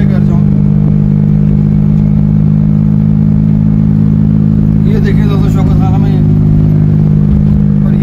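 Daihatsu Cuore's engine running at a steady cruise, heard from inside the cabin as an even, unchanging low hum. A few words are spoken briefly about five seconds in.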